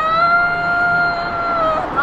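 A woman's singing voice holds one long high note, wavering before it and dropping away near the end.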